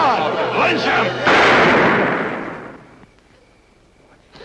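A crowd of men shouting angrily over one another, cut off about a second in by a single loud gunshot that dies away over a second and a half.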